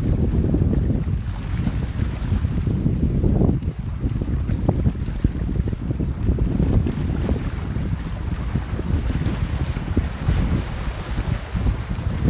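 Strong wind buffeting the microphone in gusts, a loud uneven low rumble, with small sea waves washing over the shore rocks beneath it.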